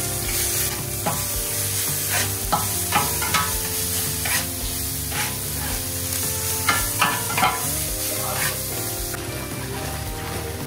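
Meat and sliced green peppers sizzling on a hot flat-top steel griddle, with a metal spatula scraping and tapping the griddle surface again and again as the food is turned.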